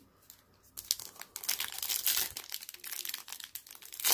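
Foil wrapper of a Prizm football card pack crinkling and crackling as it is handled and torn open, starting about a second in.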